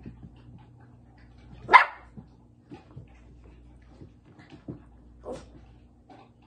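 A puppy barks once, sharp and loud, a little under two seconds in, then gives a second, quieter bark about five seconds in.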